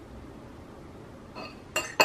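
A metal fork clinking against a ceramic plate as the plate is set down on a table: a few short clinks in the last half second, the last one the loudest.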